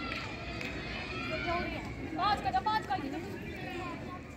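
Chatter of several people talking at once, with one voice standing out louder about two seconds in.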